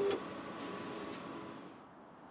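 Faint, regular clock-like ticking from a background sound bed, with a short held tone at the very start. It fades toward near silence near the end.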